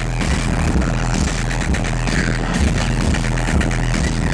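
Electronic dance music played loud over a club sound system, with a steady bass beat.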